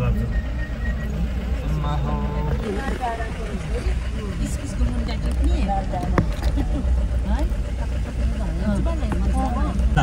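Steady low drone of a car's engine and tyres heard from inside the cabin while driving, with quiet voices talking now and then.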